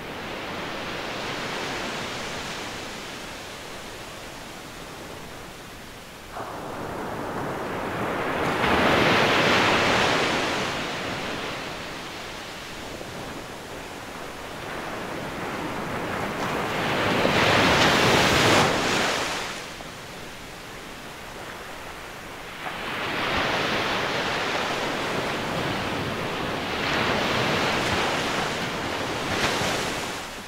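Ocean surf: waves breaking and washing up the beach in slow surges. The surges swell about nine seconds in and again around eighteen seconds, with a longer one from about twenty-three seconds that dies away at the end.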